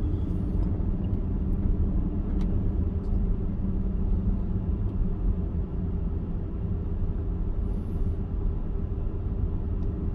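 Inside a car's cabin while it cruises slowly: a steady low rumble of engine and tyre noise with an even low hum.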